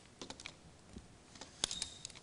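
Faint, scattered sharp clicks and taps: a few in quick succession just after the start, and the loudest about one and a half seconds in, followed by a faint brief high tone.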